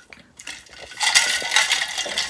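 Clinking and rattling from a stainless-steel Stanley tumbler being tilted and handled: a few light clicks, then a louder, busy clattering rattle from about a second in.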